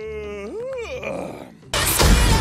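A drawn-out, voice-like pitched sound sliding slowly down in pitch ends about half a second in, followed by a short rising-and-falling call. Loud music cuts in about a second and a half in.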